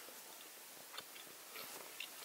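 Faint chewing of a gummy candy brick, with a small click about a second in.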